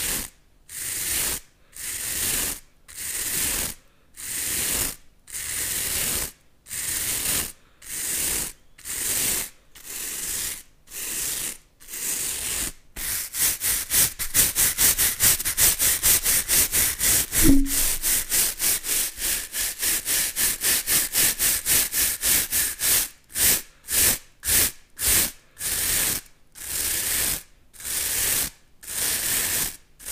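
Two plastic-bristled scrub brushes rubbed bristle against bristle close to a microphone, making scratchy brushing strokes. The strokes come about one a second at first, then speed up to quick short strokes about four a second from roughly 13 s in, and slow again after about 23 s.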